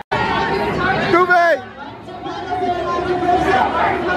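People talking and chatting close by, with indistinct voices throughout; the sound drops out briefly at the very start.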